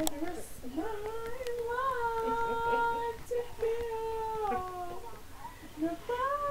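A female voice singing horribly in a high register: long held notes that waver and slide down in pitch, the words hard to make out.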